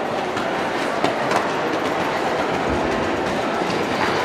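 Steady rumbling noise of a large indoor riding hall, with a couple of sharp knocks just after a second in.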